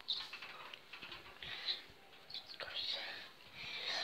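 A child whispering close to the microphone in short breathy bursts, with scattered clicks and rustles from the phone being handled.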